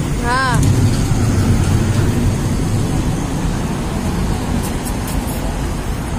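Steady low rumble of road traffic, with a brief high-pitched warbling call just after the start.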